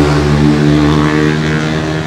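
A motorbike engine running with a loud, steady hum.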